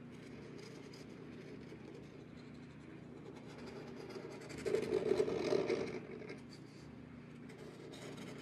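Black embossing pen tip scratching and rubbing on textured watercolor paper while coloring in a butterfly's body, faint, with a louder stretch of about a second past the middle.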